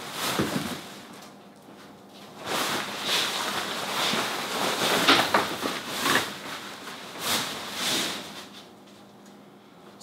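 A fabric travel cover rustling and swishing in uneven bursts as it is pulled and tucked over a sled-mounted ice shelter, busiest from about two seconds in and dying down near the end.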